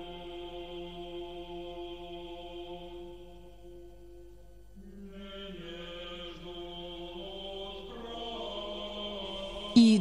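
Slow choral chant as background music, voices holding long sustained notes. It fades a little around four seconds in, then moves to a new chord at about five seconds and again near eight seconds.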